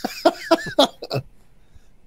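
A man laughing in about six short, breathy bursts over the first second or so, then falling quiet.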